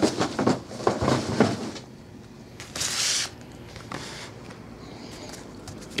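Trading card packs and their packaging handled on a table: a quick run of small clicks and rustles, then a louder rustle lasting about half a second about three seconds in, then a few faint clicks.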